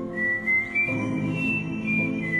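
Soft background score: a high, pure melody line in long held notes that step slowly up and down, over sustained chords.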